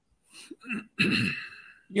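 A man clearing his throat: a few short, faint vocal sounds, then a sudden raspy, breathy burst about a second in that fades away.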